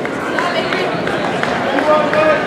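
Indistinct babble of many overlapping voices: spectators and coaches talking and calling out around a jiu-jitsu mat, steady throughout.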